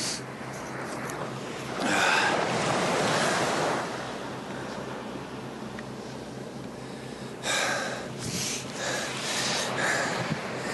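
Sea waves washing on a beach, with wind on the microphone; the surf swells louder twice, about two seconds in and again near the end.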